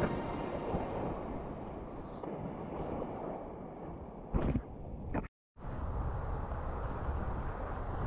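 Breaking surf and wash with wind buffeting the microphone, a steady low rushing noise. A brief louder noise comes about four and a half seconds in, and the sound cuts out for a moment just after five seconds.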